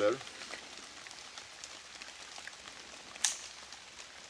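Steady light hiss of rain falling in the woods, with one short sharp click a little over three seconds in.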